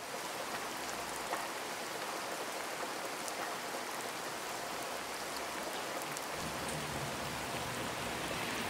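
Steady rain falling, an even hiss with scattered individual drop ticks.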